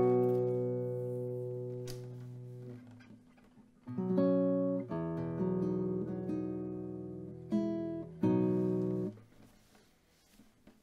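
Nylon-string classical guitar playing slow chords left to ring: the first fades away over about three seconds, then after a short pause a few more chords follow and are held until they are damped about nine seconds in.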